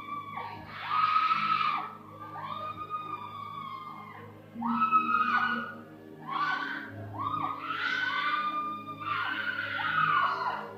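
Congregants, among them a woman, screaming in repeated high cries about a second long each, overlapping near the end, as hands are laid on them in prayer. A soft sustained keyboard pad plays underneath.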